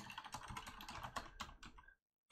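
Computer keyboard typing: a quick, irregular run of light key clicks.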